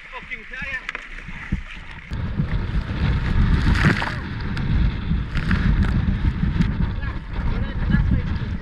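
Strong wind buffeting the microphone on a paddled kayak in rough, choppy sea, with water slapping and splashing at the hull and paddle blades. The wind rumble grows much heavier about two seconds in, and a loud splash comes near the middle.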